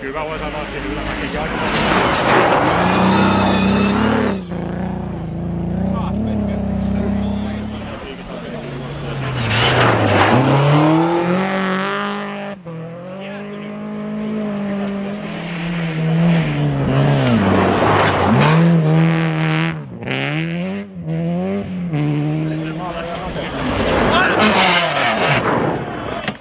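Rally car engines at high revs through a snowy corner, the pitch climbing and dropping again and again with throttle lifts and gear changes as several cars come through in turn. A burst of hiss near the end as the last car slides past.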